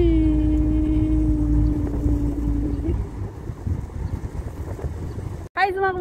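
A moored harbour ferry's horn sounds one steady blast about three seconds long, dipping slightly in pitch as it starts, over wind rumble on the microphone. After the blast only the wind rumble remains.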